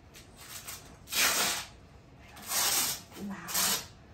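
Three hissing rips as the wrap-around vest holding a dog's Holter monitor is pulled open, the first about a second in and the last two close together.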